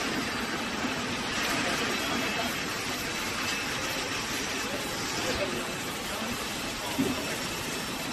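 Conveyor-belt vacuum packing machine for seafood running with a steady, even mechanical noise, with voices in the background.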